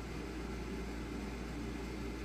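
Steady room noise: a low, even hum with a faint hiss, and no clicks or handling sounds.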